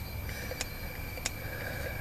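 A few faint sharp clicks, about one every two-thirds of a second, over a steady thin high whine and a low hum.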